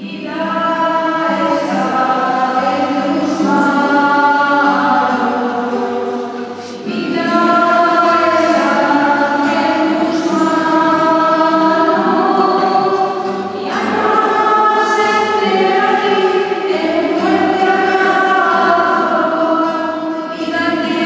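A congregation singing a hymn together, accompanied by a classical guitar, in sustained phrases that pause briefly about six and a half and thirteen and a half seconds in.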